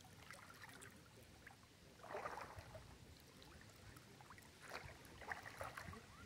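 Faint splashing and trickling of water in two short bursts, about two seconds in and again near the end, otherwise near silence.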